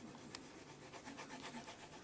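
Faint rubbing of a colouring pen on paper, in quick repeated back-and-forth strokes.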